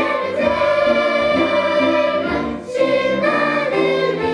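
Children's choir singing a children's song in parts with instrumental accompaniment, holding long notes, with a brief break between phrases about two and a half seconds in.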